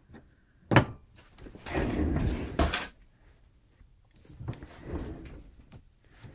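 Handling noise from a metal module being fitted into the receiver's metal chassis: a sharp click a little under a second in, then about a second of sliding and rattling metal, and softer handling later.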